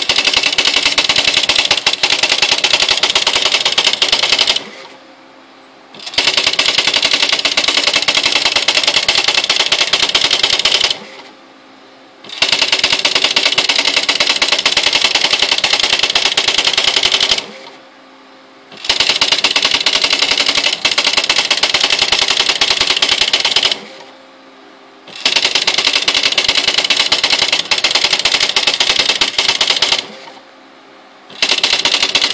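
Smith Corona SL575 electronic daisy-wheel typewriter printing its built-in demonstration text by itself. It goes in rapid clicking runs of about five seconds, one line at a time. Each run is broken by a pause of about a second with a quieter motor hum, four times, as the carriage returns and the paper advances.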